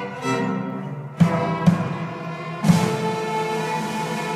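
Student string orchestra playing sustained chords, with drum-set accents: a hit about a second in, another soon after, and a cymbal crash near three seconds whose ring carries on under the strings.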